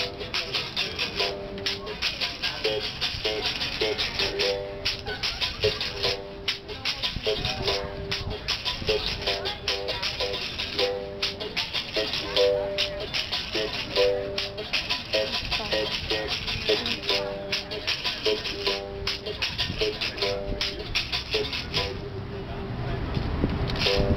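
Berimbau playing a capoeira rhythm: a steel wire on a gourd-resonated bow is struck with a stick, with a caxixi basket rattle shaken in the same hand. The notes alternate between a lower and a higher pitch in a repeating pattern. The rattling strokes stop about two seconds before the end.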